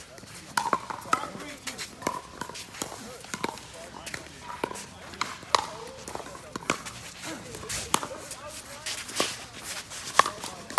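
Pickleball paddles striking a hard plastic ball: sharp pops at irregular intervals, roughly one a second, over the murmur of voices.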